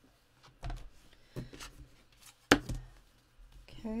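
Hands handling plastic embossing plates and an embossing folder, with faint taps and one sharp knock about two and a half seconds in.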